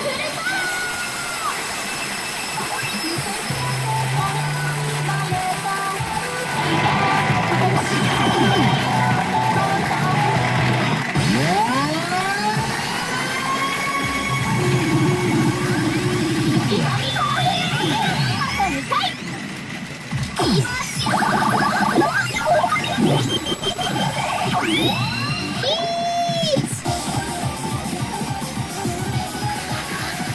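Pachinko machine (P Fever Powerful 2024) playing its electronic music and sound effects: many rising and falling synth sweeps, chimes and short repeated jingles, with some voice-like effects mixed in.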